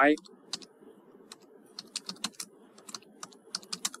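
Typing on a computer keyboard: an irregular run of quick key clicks as a name is typed out, over a faint steady low hum.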